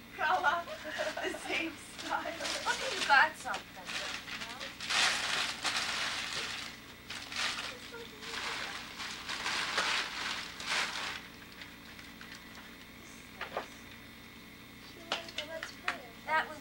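Paper crinkling and rustling in several crackly bursts, loudest through the middle, over indistinct voices of a family group at the start and near the end, with a single click in the quieter stretch.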